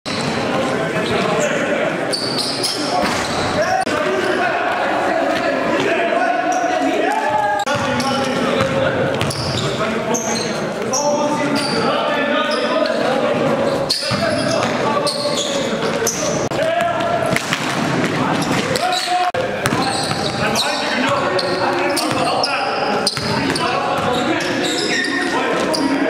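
Live sound of a basketball game in a reverberant gymnasium: a basketball bouncing on the hardwood floor amid players' voices and calls.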